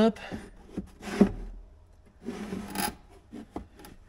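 Hands shifting the Can-Am Commander's factory plastic windshield against the plastic dash, giving two short scraping rubs, about a second in and again past the two-second mark.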